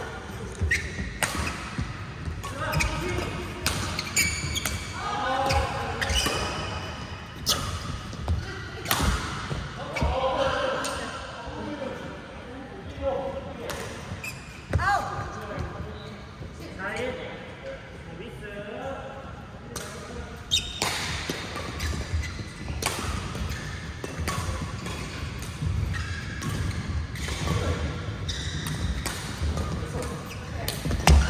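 Badminton being played in a large indoor hall: sharp shuttlecock strikes from rackets and footfalls on the court come at irregular intervals throughout.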